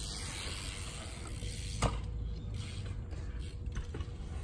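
BMX bike's rear hub freewheel ticking rapidly as the bike coasts close by, with one sharp knock a little before halfway.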